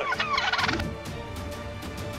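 Wild turkey toms gobbling, a rapid warbling call that stops about a second in.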